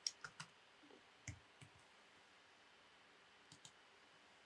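Near silence broken by a few faint, scattered clicks of a computer mouse and keyboard: a quick cluster of three at the start, another just after a second in, and two faint ones near the end.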